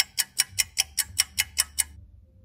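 Fast clock-like ticking of a game's countdown timer, about five ticks a second, stopping shortly before the end.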